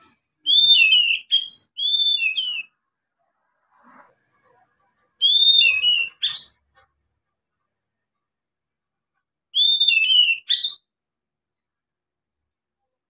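Young oriental magpie-robin, just beginning to sing, giving three short whistled phrases of quick falling and rising notes, separated by pauses of about three seconds.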